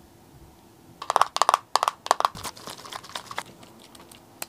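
Small thin-walled plastic sample bottle of eye makeup remover crackling and crinkling in the hand, starting about a second in with a fast run of sharp crackles, then thinning to scattered softer crinkles as it is tipped over a cotton pad.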